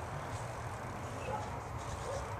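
Faint, steady outdoor background noise with a low rumble.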